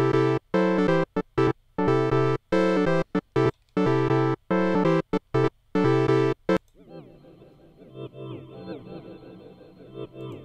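FM synthesizer (Bitwig FM-4) playing chord stabs in a choppy, stop-start rhythm as presets are auditioned. About two-thirds of the way in it switches to a much quieter, softer preset with gliding pitches.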